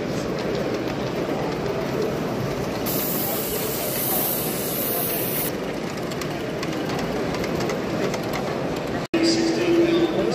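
Small live-steam garden-railway locomotive running, with a loud hiss of steam starting about three seconds in and lasting a couple of seconds, over the chatter of a crowd in a hall. The sound cuts out for an instant near the end, and a steady tone follows.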